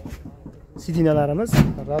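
A man's voice speaking a short phrase in the second half, with one short thump in the middle of it.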